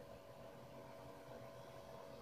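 Near silence: faint steady hiss with a thin constant hum of room tone.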